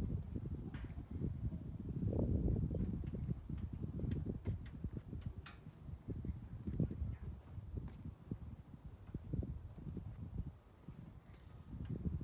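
Wind rumbling on the microphone with footsteps on asphalt as the camera is carried around a parked motorcycle, with a few sharp clicks; the bike's engine is not running.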